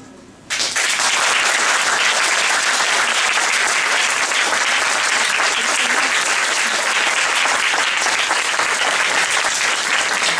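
The last piano chord fades out, then the audience breaks into applause about half a second in, clapping steadily and evenly.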